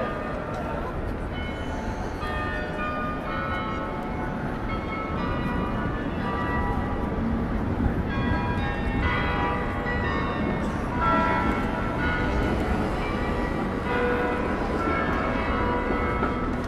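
Bells ringing, many separate strikes at different pitches overlapping one another. Under them are a steady low rumble of city traffic and crowd chatter.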